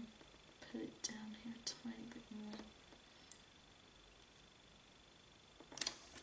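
A faint voice murmuring or humming under the breath in short pieces, with a few light clicks, over a faint steady high whine. It goes quiet after about three seconds.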